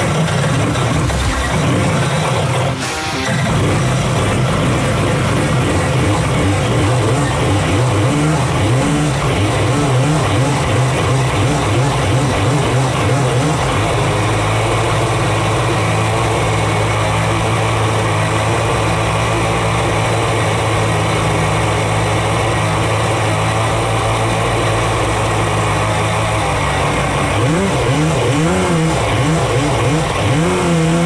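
Rebuilt two-stroke stroker engine of a 1994 Yamaha Superjet stand-up jet ski, with dual carbs and an aftermarket expansion pipe, run hard under load with its jet pump underwater, so the pump is working a full load of water. The pitch holds steady for a long stretch, then rises and falls near the end. The plugs read rich afterwards, so the engine is running on a rich tune.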